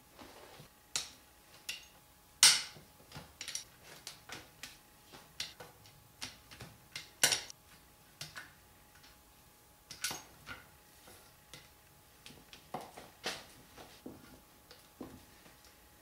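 Ratchet and socket breaking loose and backing out the 13 mm gear-carrier bolts on an Audi 016 transmission case: irregular metallic clicks and clinks, with a few louder clacks spread through.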